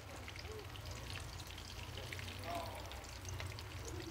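Surmai (kingfish) slices shallow-frying in hot oil in a pan: a faint, steady sizzle with small scattered crackles.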